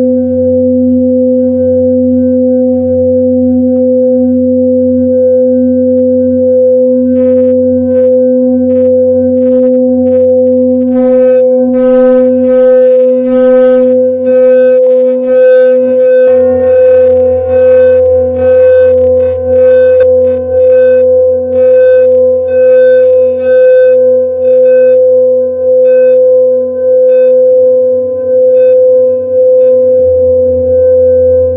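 Tibetan singing bowls sounding a sustained, steady low hum with a deeper tone beneath it. From about a quarter of the way in, shimmering higher overtones join and the sound swells and fades in a pulsing beat of roughly once a second.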